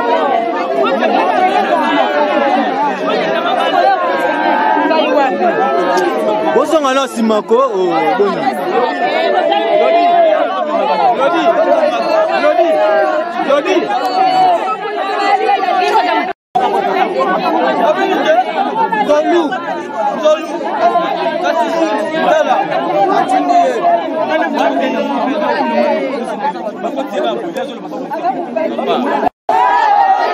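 A crowd of mourners, many voices overlapping at once with no single speaker standing out. The sound cuts out for an instant twice, about halfway through and near the end.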